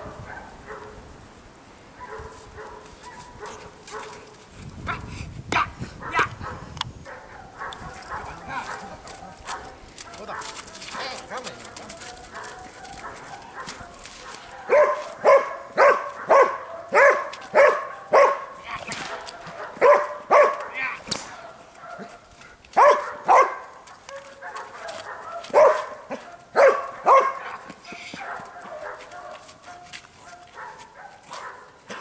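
Belgian Malinois on a leash barking at a training helper: a long run of sharp barks, about two a second, starting about halfway through, then shorter runs of barks after brief pauses.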